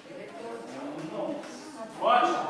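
Quiet talking voices, the murmur of people speaking in the room.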